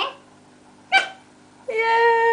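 A toddler's high voice: a short sharp squeal about a second in, then a long held call starting near the end, falling slightly in pitch.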